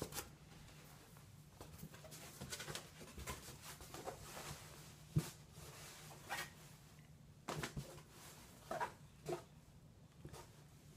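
Quiet room with a steady low hum and scattered small clicks and rustles. The sharpest click comes about five seconds in, and a few brief noises follow near the end.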